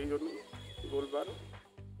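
A voice speaking in short stretches over background music with a repeating low beat.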